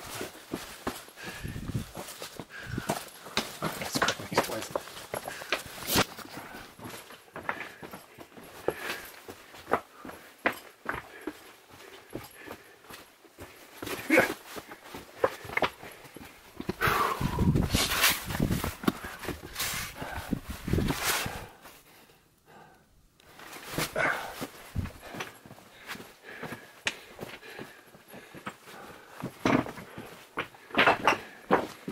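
Gloved hands, knees and boots scraping and knocking on rock and gravel while crawling through a narrow cave tunnel, in an irregular run of scuffs and clunks. A louder spell of shuffling comes about two-thirds of the way through, then a brief hush.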